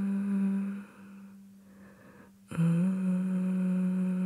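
A human voice humming a long, steady 'mm' note that stops about a second in. A second hummed note starts sharply about two and a half seconds in, slides slightly up in pitch and holds to near the end.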